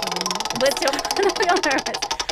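Prize wheel spinning, its ticker clicking rapidly at about twenty clicks a second, with voices talking over it.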